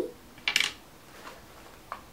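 A single brief, light clink and rustle about half a second in as a penny is handled; otherwise quiet room tone.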